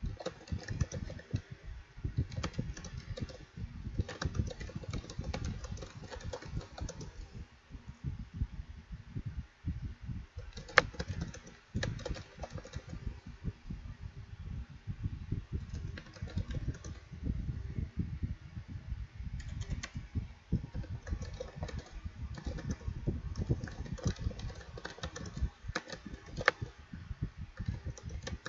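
Computer keyboard being typed on in quick, uneven runs of keystrokes, with one sharper click about eleven seconds in.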